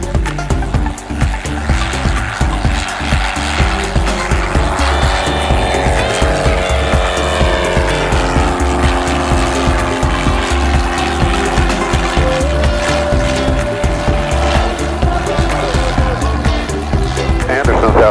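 Single-engine high-wing light aircraft taking off and climbing past, its engine and propeller drone falling in pitch as it goes by, under background music with a steady beat.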